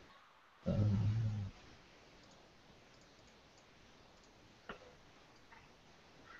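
A short, steady low hum lasting just under a second near the start, then a single faint click almost five seconds in.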